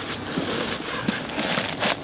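Dry straw grass rustling and crackling as it is tipped from a plastic bowl into a stainless steel pot and pressed down, with a louder crunch near the end.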